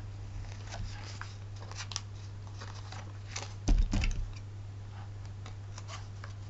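Light clicks and rustles of paper and card being handled by hand, with one louder thump about four seconds in, over a steady low hum.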